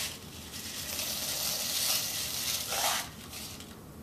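Medium-size gravel poured from a small cup into a clear plastic cup, a steady rattling hiss of the grains landing that lasts about two and a half seconds and stops about three seconds in.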